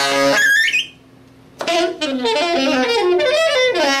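Solo saxophone improvising: a loud note that breaks into a high squeal, a brief pause, then a rapid run of notes jumping about in pitch.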